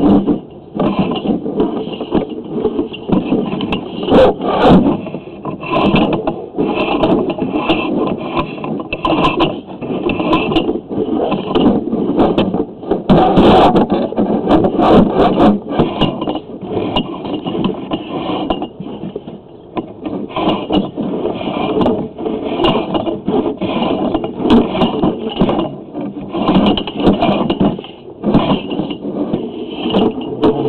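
Sewer inspection camera push cable being fed down into a cast-iron drain line, with a continuous irregular scraping and rattling as the cable rubs and knocks along the pipe.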